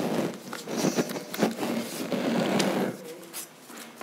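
Close rustling and clicking handling noise at a desk, a busy run of scraping and ticks that dies down about three seconds in.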